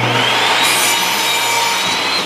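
Ryobi miter saw cutting through a wooden board: the motor's whine climbs as the blade comes up to speed, then holds steady under the rasp of the blade through the wood.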